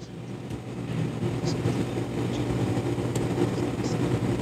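A low, steady engine hum that grows gradually louder.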